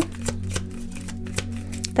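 Tarot cards being shuffled and handled: a run of light, irregular clicks and flicks. Under them runs soft background music with a steady low drone.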